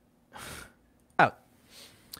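A man's short, sharp breath drawn in through the mouth, followed by a brief spoken "oh".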